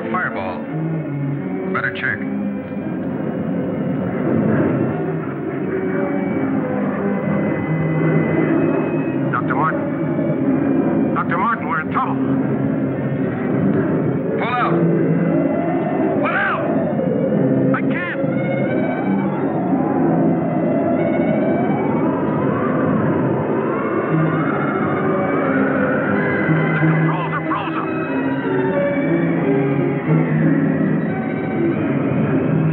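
Dramatic orchestral film score with held chords and short sweeping figures. A wavering high line slowly climbs in pitch through the second half.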